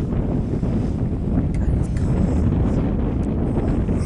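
Wind buffeting the camcorder's microphone: a steady low rumble.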